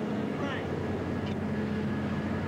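A steady low drone, with a brief faint voice about half a second in.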